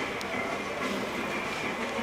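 Steady background room noise in a shop, with one faint click shortly after the start.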